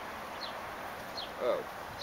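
A small bird calling in short, high, falling chirps repeated roughly every three-quarters of a second, over steady outdoor background noise.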